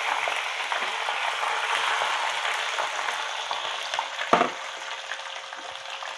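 Sliced green chillies frying in sesame oil in a pan: a steady sizzle that slowly fades, with one brief knock a little over four seconds in.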